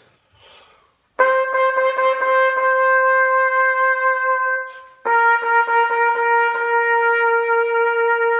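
Solo trumpet playing two long notes, the second a step lower than the first, evoking beeping car horns in a city.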